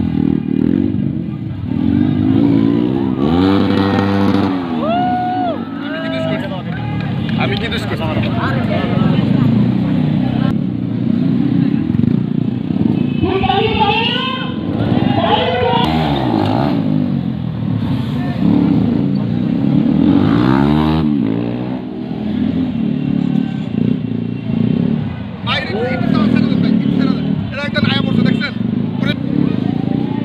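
Motorcycle engine revving up and down repeatedly as riders hold wheelies, with rising and falling swells of engine pitch several times, over the chatter of a crowd.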